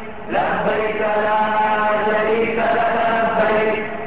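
A chanted vocal theme: a voice holding long, melodic notes and gliding between them in phrases. It dips briefly at the start, and a new phrase enters about a third of a second in.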